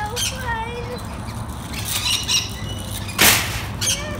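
Rainbow lorikeets feeding on nectar from a hand-held cup, giving short high chirps, then one loud harsh burst a little past three seconds in.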